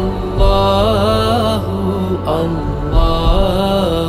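Islamic devotional chant: a solo voice sung in long, wavering held notes over a steady low drone.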